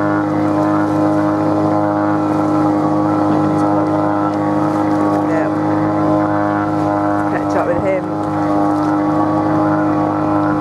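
Boat engine running at a steady speed under way: a loud, even, unchanging drone.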